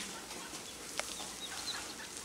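Mallard ducklings peeping in short, high calls, with a single sharp click about halfway through.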